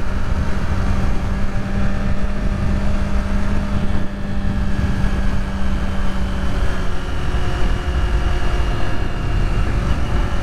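Kawasaki Z400 parallel-twin engine running at a steady cruise, mixed with heavy wind rush on the camera. A steady drone holds for about the first seven seconds, then drops out as the engine note changes.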